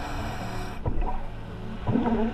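Muffled underwater sound of a scuba diver: a rush of exhaled regulator bubbles that stops about a second in, then a couple of dull knocks, with soft background music underneath.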